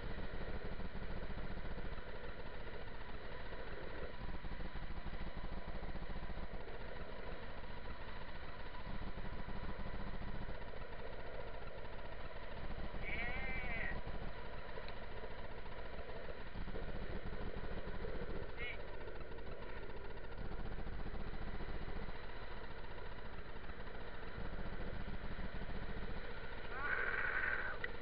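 Steady rushing of wind on the microphone and longboard wheels rolling on asphalt during a downhill ride, with a short high-pitched shout about halfway through.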